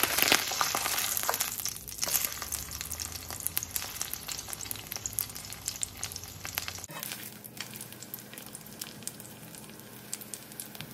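Corn tortilla frying in shallow oil in a nonstick skillet: a steady sizzle full of tiny crackles, loudest right at the start and quieter from about seven seconds in.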